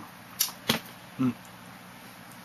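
Two sharp clicks about a third of a second apart, then a single spoken word.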